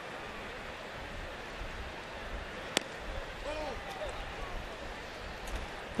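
Steady murmur of a ballpark crowd, with one sharp pop a little under three seconds in as a fastball smacks into the catcher's mitt, a pitch the umpire calls a ball. A faint call from the crowd follows.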